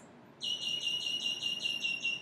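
Insect calling: a steady, high-pitched trill pulsing evenly at about seven pulses a second, starting about half a second in.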